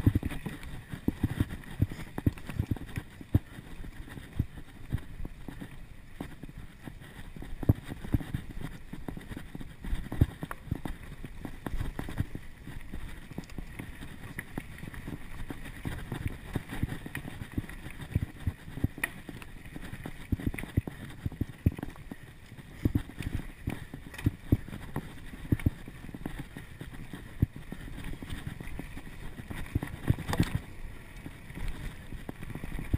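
Mountain bike riding fast over a dirt singletrack: a steady low rumble of tyres on packed dirt and leaves, broken by frequent sharp knocks and rattles as the bike goes over roots and bumps.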